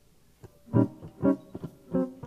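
Jazz archtop guitar starting a tune alone: a light click about half a second in, then chords struck about twice a second, each ringing briefly.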